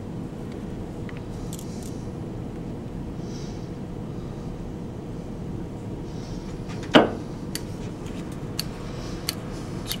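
A steady low machine hum, with one sharp click about seven seconds in and a few faint ticks after it.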